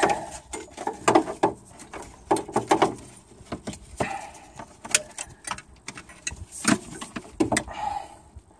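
Hands working metal wire ring terminals and a nut onto a stud, with irregular small clicks and knocks, and a sleeve brushing close to the microphone.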